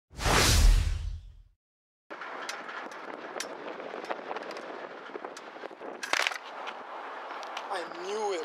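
A loud whoosh with a deep rumble that fades out over about a second and a half, then a moment of dead silence, then steady outdoor background noise with scattered sharp clicks; a voice starts near the end.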